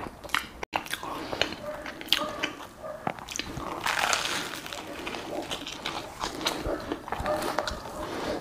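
Close-miked eating: biting into and chewing toasted bread, with crunching and wet mouth clicks, the crunching most intense around the middle.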